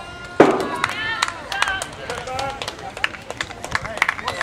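Voices of players and onlookers calling out and talking in short bursts, with a single loud thump about half a second in and scattered sharp clicks.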